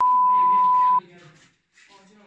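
A steady, loud one-second beep tone, a censor bleep laid over a man's speech, which stops sharply. Talking continues beneath it and after it.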